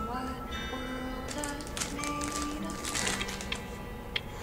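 Crinkling clicks of a lollipop's plastic wrapper being pulled off, over background music with long held notes.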